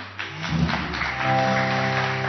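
Studio audience clapping over background music; a held musical chord comes in about a second in.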